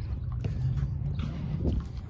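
Low steady rumble of handling and wind on a phone microphone, with a few faint knocks.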